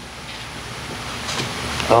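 Steady rushing background noise with no distinct events, slowly growing louder.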